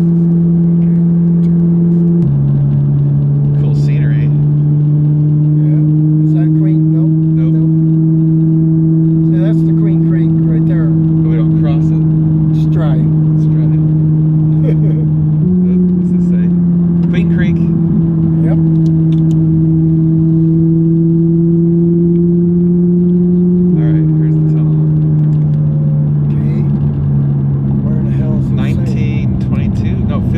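Ferrari V8 heard from inside the cabin, cruising with a steady drone. The note steps down in pitch a couple of seconds in, steps up about halfway through and drops again later, the way it does when the gearbox changes gear.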